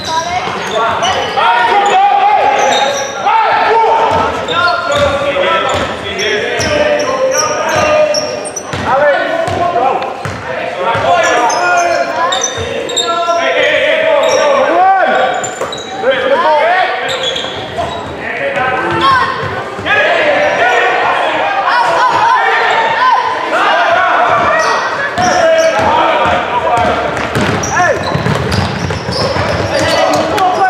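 Basketball game play in a large sports hall: the ball bounces repeatedly on the wooden floor and thuds in play, under indistinct shouting from players and the bench, with the echo of the hall.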